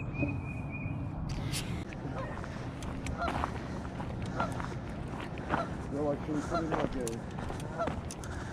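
Geese honking across a pond: a series of short calls, starting about three seconds in and coming faster near the end.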